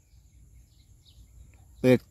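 Quiet outdoor ambience in a pause between words: a faint low rumble, a steady high insect drone and a few faint bird chirps. A man's voice starts again near the end.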